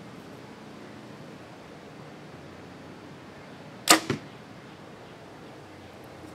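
A Mathews compound bow strung with Catfish Custom Bloodline VEC 99 strings is shot once, about four seconds in. There is one sharp crack of the string on release, followed a fraction of a second later by a second, smaller knock. The shot is quiet, dead in the hand.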